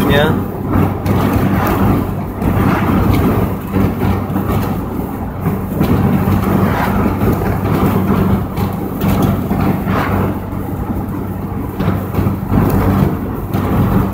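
Wind rushing through the open side windows of a moving car, heard from inside the cabin, over the steady drone of the engine and tyres.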